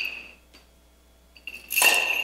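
Small bells on a swinging censer's chains ringing and dying away within the first half second. After about a second of near quiet, a sharp metallic clink and jangle of chain and bells comes near the end as the censer is swung again, and the bells ring on.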